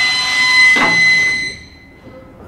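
A buzzer sounding a loud, steady high tone, which stops about one and a half seconds in.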